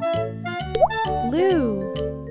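Bouncy children's background music with a steady beat. About a second in comes a quick rising plop sound effect, and then a voice sings or calls out a note that rises and falls.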